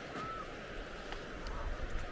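Wind rumbling on the microphone, swelling near the end, with light footsteps on a dirt path.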